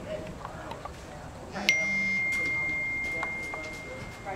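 A horse's hooves falling on soft arena footing; a bit under halfway through, a single high ringing tone starts suddenly and fades slowly over about two seconds, becoming the loudest sound.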